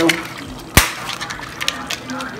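Dry lasagna sheets clicking against one another and against a glass baking dish as they are laid in, with one sharp crack about three-quarters of a second in and a few lighter clicks after it.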